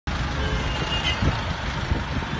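Busy city road traffic: a steady low rumble of engines and tyres from cars and minibuses driving past close by, with a faint brief high tone about a second in.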